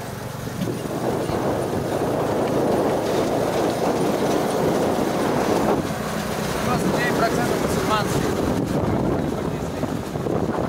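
Engine and road noise of an open-sided, canopied passenger vehicle heard from the passenger seat while it drives along a concrete road. The noise is steady and eases a little after about six seconds.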